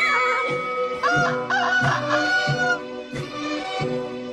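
A rooster crowing once, starting about a second in, over music with a steady repeating beat.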